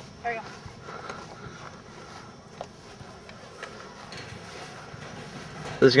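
Steady outdoor background noise with a few faint, short clicks.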